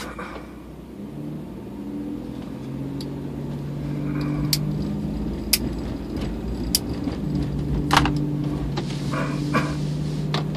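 Car engine and road noise heard inside the cabin: a low steady hum that grows louder as the car pulls away. Several sharp knocks and rattles come in the second half as the car rolls over the rails of a level crossing.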